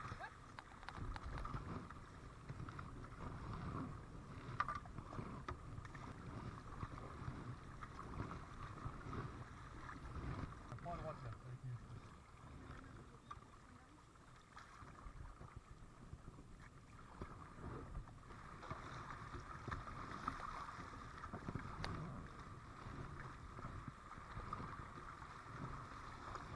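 Kayak being paddled down a shallow river: a steady wash of moving water around the plastic hull and the paddle blades.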